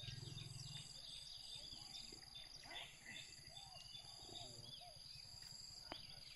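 Faint outdoor ambience: distant voices of onlookers, short bird chirps and a steady high insect whine. No clash of the fighting bulls stands out.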